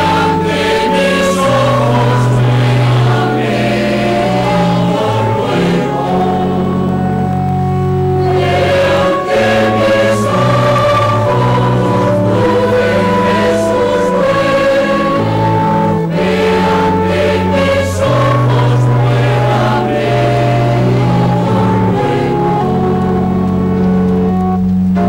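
A choir singing a slow sacred hymn in long held chords.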